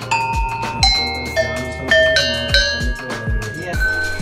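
Background music with a steady beat, over a run of struck copper bells ringing one after another at different pitches, mostly stepping lower, hit with a wooden mallet.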